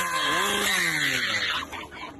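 A chainsaw engine revving up and down, then winding down and fading out near the end.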